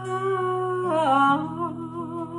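A woman's voice holding a sung note that slides down about a second in and then wavers, over an acoustic guitar whose strummed chord rings on beneath it.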